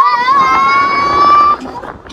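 Riders screaming on a swinging pendulum amusement ride: one long high scream that rises, holds its pitch for about a second and a half, then breaks off.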